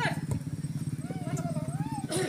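A small engine idling steadily with a fast, even pulse.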